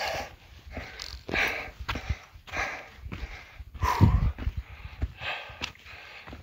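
A man breathing hard and fast, a breath roughly every half second, heaving from the effort of a steep uphill climb under a heavy backpack. One breath about four seconds in is louder than the rest.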